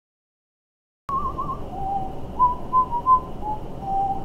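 After a second of silence, a string of short, pure whistled notes over low room noise: first a quick warbling note, then five or six single notes stepping up and down in pitch.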